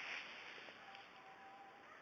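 Near silence: faint background hiss, with a faint, thin, steady tone lasting about a second in the middle.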